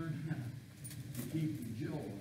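A man's voice speaking in a sermon, with a few short light clinks or rustles about a second in.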